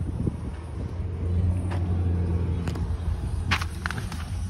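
Audi A3's engine idling with a steady low hum, with a few light clicks in the second half.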